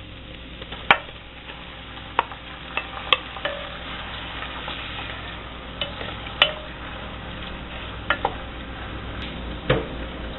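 Shrimp sizzling in hot butter, olive oil and garlic in a stainless steel pot as they are stirred with a wooden spoon, with a handful of sharp knocks of the spoon against the pot, the loudest about a second in.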